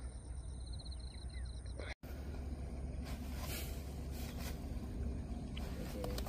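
Outdoor field ambience: a steady low rumble of wind on the microphone, with an insect trilling faintly for the first two seconds. The sound breaks off briefly about two seconds in, then returns as a steady rustling hiss.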